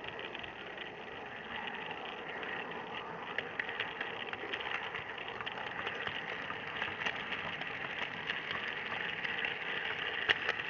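Model train running along its track, heard from a camera riding on it: a steady rattle of small wheels on the rails with many quick little clicks, growing a little louder after a few seconds.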